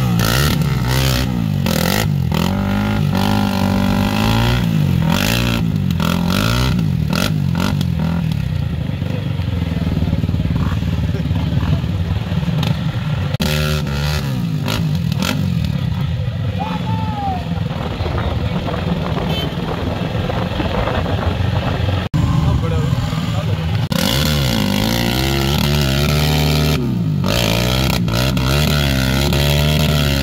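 Sport quad's engine revving hard over and over, its pitch rising and falling, as the quad sits stuck in deep mud with its rear wheels spinning.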